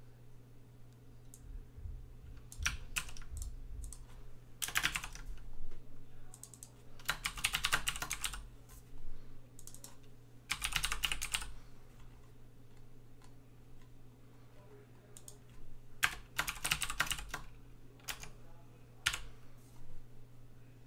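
Computer keyboard typing in several short bursts of rapid keystrokes, with pauses of a second or more between them.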